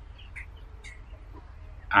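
A few faint, short bird chirps, three or four scattered through the pause, over a low steady background rumble.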